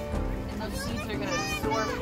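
High-pitched children's voices chattering over steady background music, the voices clearest in the second half.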